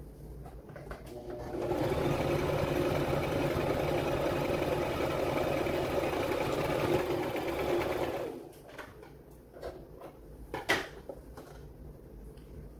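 Brother LX3817 electric sewing machine running steadily, stitching through twill fabric: it starts about a second and a half in and stops at about eight seconds. After that come a few scattered clicks, one sharper than the rest, as the fabric is handled.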